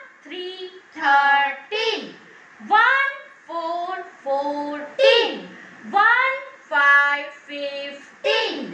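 A high-pitched voice chants the numbers twelve to twenty in a sing-song, one syllable group about every second, spelling each number digit by digit and then naming it ("one, three, thirteen").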